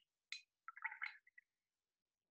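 A paintbrush rinsed in a small glass jar of water, heard faintly: a light tap about a third of a second in, then a brief swish of water lasting under a second.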